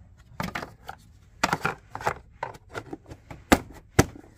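Plastic fuse box cover being fitted back on by hand: a run of light plastic clicks and rattles, then a sharp snap about three and a half seconds in as it is pressed into place.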